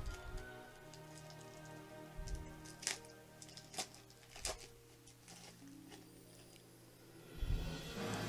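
Faint background music with a few short crackles and rips as the wrapper of a 1990 Score baseball card pack is torn open by hand, the sharpest ones between about two and four and a half seconds in.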